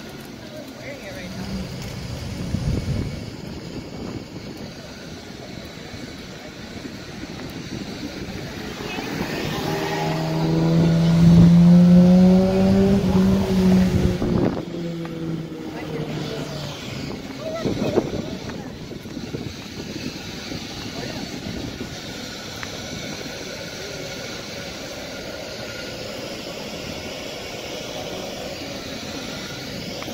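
Street traffic, with a motor vehicle passing close by. Its engine grows loud about ten seconds in, peaks a couple of seconds later, and drops in pitch as it moves away.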